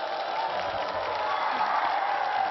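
Studio audience applauding and cheering, a dense wash of clapping and voices that swells up just before and holds steady.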